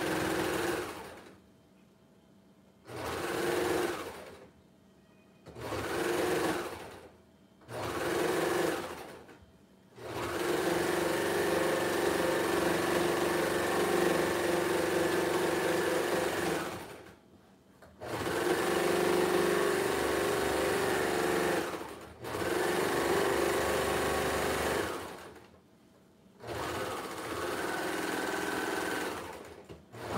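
Baby Lock Imagine serger (overlock machine) stitching knit T-shirt fabric in a series of stop-start runs. It makes about eight runs, a few short ones of a second or two early on, then longer runs of several seconds, the longest about seven seconds near the middle, each stopping cleanly between passes.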